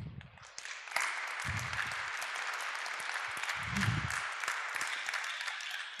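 Audience applauding: dense clapping that swells up about a second in and then holds steady.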